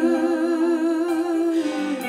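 A worship singer holding one long note with vibrato over keyboard accompaniment; near the end the note gives way to a lower one.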